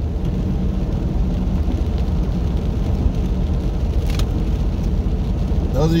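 Steady in-cabin engine drone and tyre noise of a vehicle driving on a wet road, with one faint click about four seconds in.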